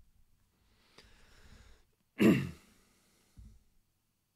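A man breathes in softly, then lets out one short, sharp exhale from the throat about two seconds in. There is a faint click about a second in and a soft low thump near the end.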